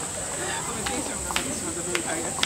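A steady, high-pitched drone of night insects, with faint murmured voices of people nearby and a few sharp clicks about a second in and near the end.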